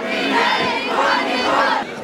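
Large crowd of demonstrators shouting slogans together, many voices rising and falling at once.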